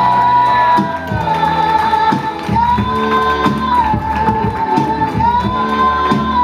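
Live band music: a long held melody line stepping back and forth between two high notes over a steady bass line and beat.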